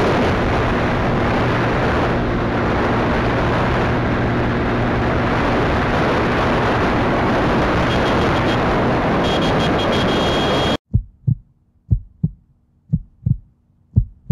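Wind rushing over the microphone with a motorcycle engine running at highway speed, about 100 km/h. About eleven seconds in it cuts off suddenly and a heartbeat sound effect takes over: deep double thumps about once a second.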